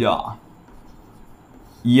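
Chalk writing on a chalkboard: faint strokes of chalk on the board, between a man's words that end shortly after the start and begin again at the very end.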